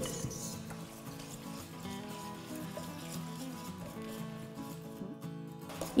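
Soft background music with changing notes over faint hand-beating of cake batter (eggs, honey and oil) in a stainless steel bowl. The sound drops out briefly near the end.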